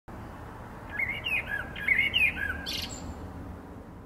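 A bird calling: a run of short chirps, several rising and falling in pitch, between about one and three seconds in, ending in a brief harsher note.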